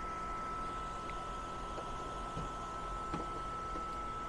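Steady whir and hiss of an electric space heater, a heat gun and a fan running together, with a thin steady high whine and a couple of faint ticks.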